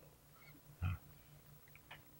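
Mostly quiet, with one short, low grunt from a man's voice just under a second in.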